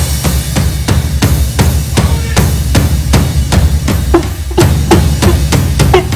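Live band music without vocals: a steady drum-kit beat of kick, snare and cymbals over a bass line.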